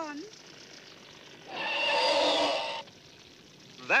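Cartoon sound effect: a single hissing rush lasting just over a second, about a second and a half in.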